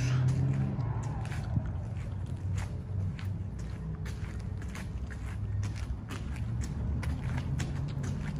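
Footsteps on alley pavement at a walking pace, about two steps a second, over a steady low rumble.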